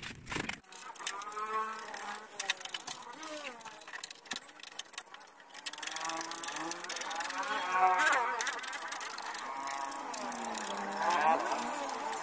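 A voice singing in long, gliding notes, loudest near the middle and end, over faint scraping and ticking of sandpaper and a scraper working flaking paint off a plastic motorcycle side cover.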